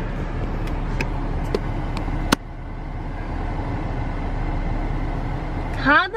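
Steady car cabin noise, a low rumble with faint ticks. A sharp click comes a little over two seconds in, and the rumble is a little quieter after it.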